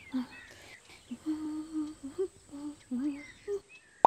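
A voice humming a simple tune, a string of short held notes that step up and down.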